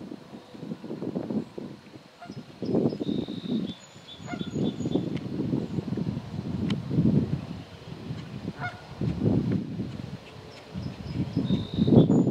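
Canada geese honking over and over in loud, irregular bouts, with a few high, thin bird chirps above them.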